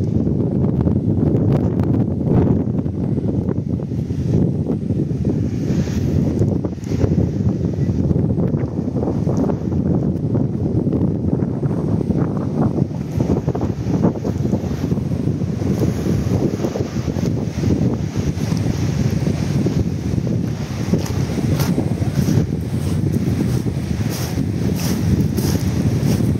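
Wind blowing across the microphone, a continuous low rumble that rises and falls, with sea surf breaking on rocks behind it.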